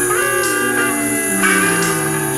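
Instrumental guitar music: chords ringing out, with a new chord struck about a second and a half in.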